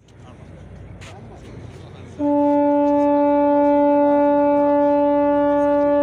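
A boat's horn sounding one long, loud, steady blast that starts abruptly about two seconds in and holds at a single pitch for over four seconds.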